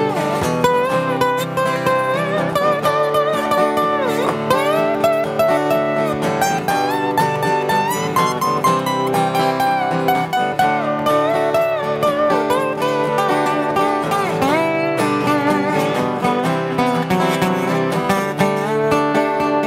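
Two acoustic guitars playing an instrumental passage: one strums chords while the other plays lead lines high on the neck, with bent notes and vibrato.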